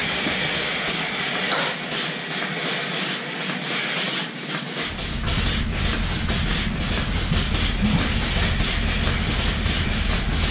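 Milking machine running in a dairy milking shed: a steady hiss of vacuum and air in the milk lines with a rhythmic clicking of the pulsators, about twice a second. A low hum drops away near the start and comes back about halfway through.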